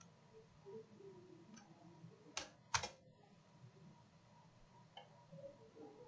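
Two sharp clicks of computer keyboard keys, about half a second apart, a little over two seconds in, over faint room noise.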